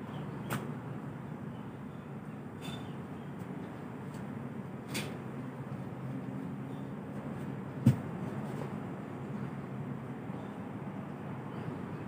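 Steady low outdoor background rumble with a few light clicks and one sharp knock about eight seconds in, from things being handled during garden work.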